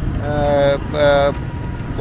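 A vehicle horn sounding twice, two short steady blasts, the second shorter, over a low traffic rumble.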